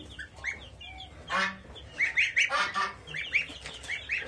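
Goslings and chicks peeping in quick, high calls, with louder, harsher goose calls about one and a half seconds in and again after two seconds.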